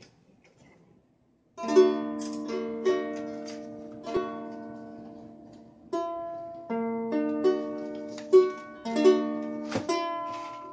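Ukulele strummed, starting about a second and a half in: single strums every half second to second, each chord ringing and fading, with the chord changing a few times.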